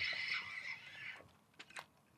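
Spinning fishing reel being cranked, a steady whir with a thin high tone that stops just over a second in, followed by a few faint clicks.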